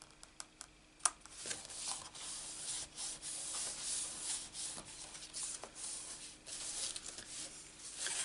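Hands rubbing and sliding over a folded cardstock card, pressing it flat and turning it over, an uneven rustle with light taps. A few faint ticks come first, then a sharper click about a second in as the rubbing starts.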